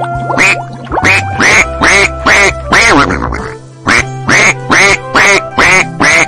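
A duck quacking over and over, about three quacks a second, with a short break a little past the middle, over background music.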